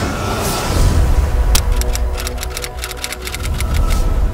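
Closing channel-ident music with a deep bass and a rising whoosh, then a rapid run of sharp ticking clicks starting about a second and a half in.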